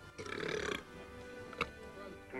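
A man's burp of about half a second after drinking bottled soda, over background music, with a single sharp click a little over a second later.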